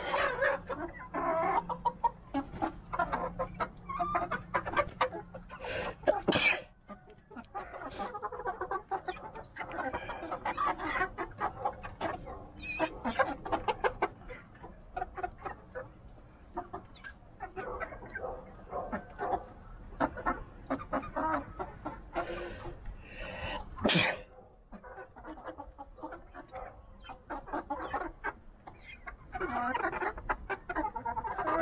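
Rhode Island Red hens clucking over and over as they feed, many short calls overlapping, with a sharp louder noise about six seconds in.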